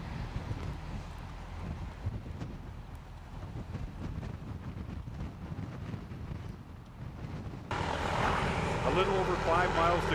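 Low, steady engine rumble of a vehicle moving alongside the runners. About three-quarters of the way through, the sound abruptly gets louder and people start shouting.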